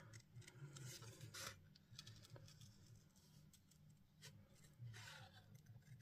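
Small craft scissors faintly snipping through thin cardstock while fussy cutting a stamped dragonfly, a few short snips scattered through, over a faint low hum.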